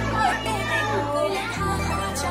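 Music with a steady bass line that shifts to a new note near the end, under overlapping chatter of children and adults in a crowded room.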